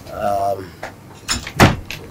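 A brief voiced sound, then two sharp knocks about a third of a second apart in the second half; the second knock is the loudest.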